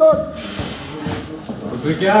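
Men's voices shouting, loudest right at the start, with a short hissing rush about half a second in.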